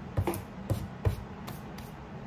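A hand wiping spilled face powder off a desk: a few short brushing strokes.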